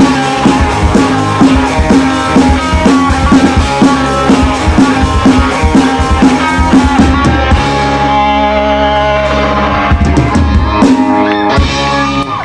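Live rock band of electric guitars and drum kit playing the instrumental close of a song, with a chord held for about two seconds past the middle and drum hits again near the end.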